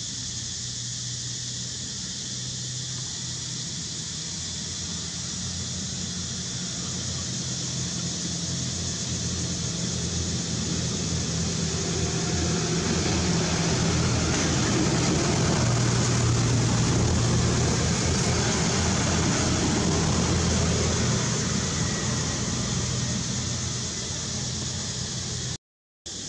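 Steady low motor hum, like a vehicle engine running nearby, growing louder through the middle and easing off near the end, over a constant high hiss.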